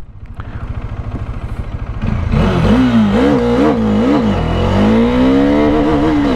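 Bajaj Dominar 400's single-cylinder engine accelerating hard under full throttle. It pulses low at first, then from about two seconds in its pitch wavers up and down before climbing steadily as it runs up through the low gears, with wind noise building.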